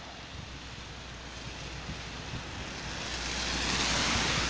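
Tyres hissing on wet asphalt as a car approaches, the spray noise growing steadily louder.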